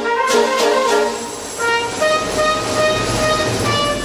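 Brass band music: quick notes at first, a short lull about a second in, then long held chords.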